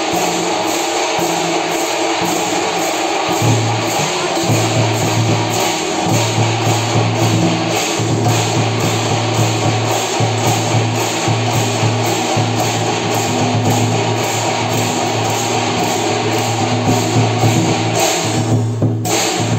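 Chinese percussion band playing large hand-held gongs and cymbals, a loud, continuous metallic clashing with a steady low tone underneath that breaks off every second or so.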